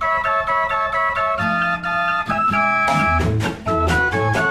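A mechanical fairground organ plays a tune in held pipe notes from perforated cardboard book music, with guitar and banjo. The drum and bass beat drops out for the first few seconds and comes back near the end.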